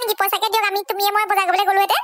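A high-pitched cartoon character's voice chattering in quick, short syllables at a nearly level pitch, cutting off abruptly at the end.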